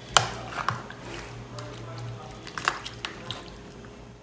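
A spoon mixing raw chicken pieces with a wet seasoning paste in a plastic tub: soft squelching, broken by irregular sharp clicks of the spoon against the container.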